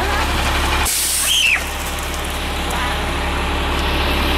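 A vehicle engine idling steadily, with a short hiss about a second in.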